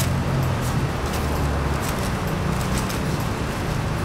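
Steady low traffic rumble, heavier for the first couple of seconds as a vehicle goes by, with a few faint clicks of a cardboard pizza box being handled.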